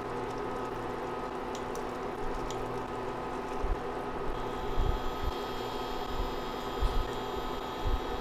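Sauce simmering in a pot with a steady electric hum, and a few soft low knocks in the second half as stuffed bitter gourd rings are set into the pot with metal tongs.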